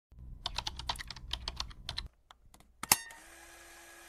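Computer-keyboard typing sound effect: a quick run of key clicks for about a second and a half, then one sharper click near three seconds in, followed by a faint steady hum.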